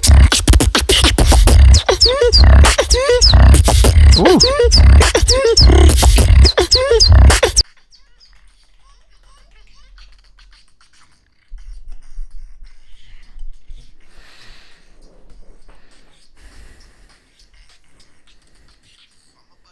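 Beatboxing: a heavy, rhythmic vocal bass with sliding, pitched vocal sounds over it. It cuts off suddenly about seven and a half seconds in, and only faint low sounds follow.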